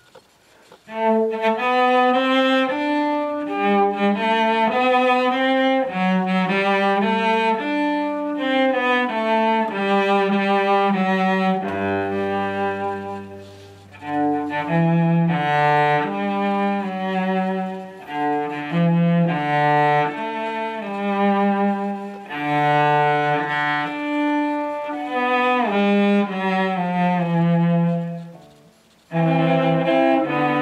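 Solo cello bowed, playing a slow melodic piece in the key of G in held notes. It starts about a second in, with a short pause near the end before the playing goes on.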